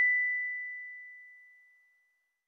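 A single ding sound effect: one high, pure ringing tone, struck once, that fades away steadily over about a second and a half.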